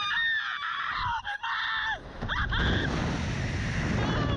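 Riders on a Slingshot reverse-bungee ride screaming in several high, held cries that fall away in pitch, with wind rushing loudly over the microphone, heaviest in the second half.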